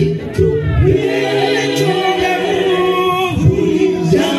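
Mixed-voice gospel choir singing unaccompanied in close harmony, with a male lead singing at the front. The voices hold long chords, breaking briefly about half a second in and again near the end.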